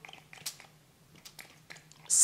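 Faint handling noise: a few scattered small clicks and taps as art supplies are handled over a cardboard box.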